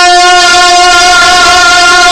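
A male naat reciter singing one long, steady held note into the microphone.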